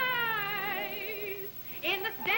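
A woman sings a long held note with strong vibrato that slides downward in pitch and fades about a second and a half in. A new sung phrase starts near the end, recorded on an early sound-film soundtrack.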